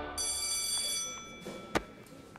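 A bright, high bell-like ring sounds just after the sung musical number ends, holds for under a second and then fades. A single sharp click comes near the end.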